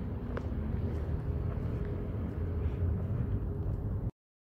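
Outdoor city street ambience: a steady low rumble, with a single sharp click about half a second in.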